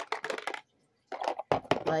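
Plastic lip gloss and lip stain tubes clattering against each other inside a clear plastic container as it is moved, a quick run of clicks over about half a second.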